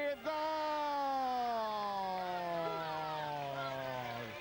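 A football TV commentator's long drawn-out goal cry: one held 'gooool' whose pitch slowly falls over about four seconds, announcing a goal.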